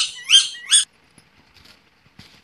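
Rose-ringed parakeet calling: three short, high calls that rise and fall within the first second, then only faint clicks.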